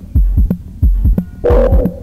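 Electronic beat with a deep, repeating kick-drum thump whose pitch drops on each hit. A pitched synth or sampled tone comes in over it about one and a half seconds in.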